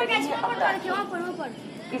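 Speech only: a voice making a public-address announcement at a railway station, warning against ticketless travel.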